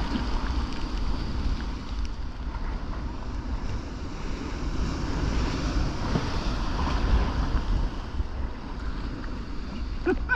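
Breaking waves and surf churning around a sea kayak in rough seas, with wind buffeting the microphone as a steady low rumble.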